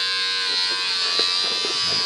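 Electric hair clippers running with a steady high buzz.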